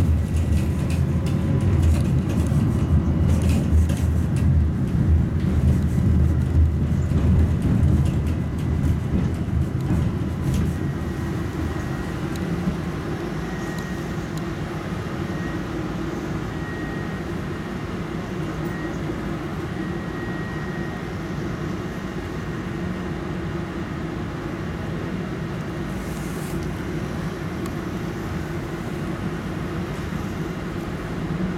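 Tatra T3 tram heard from inside the car, rolling through a curve with a heavy rumble and clatter of wheels on the rails. About twelve seconds in the rumble drops away, and the standing tram gives off a steady low hum with a faint high tone.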